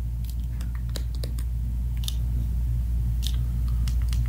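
Small, scattered clicks and taps from hands working the plastic DJI OM 5 smartphone gimbal and its reset button as it swings the phone back to its start position, over a steady low hum.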